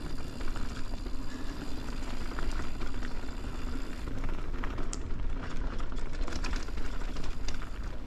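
Mountain bike rolling fast down a dirt singletrack: steady tyre noise with a low rumble and hiss, and scattered sharp clicks and rattles from the bike over the trail.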